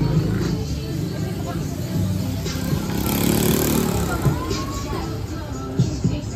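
Street market ambience: people talking and music playing, with a motor vehicle passing near the middle, its engine rising and then falling away.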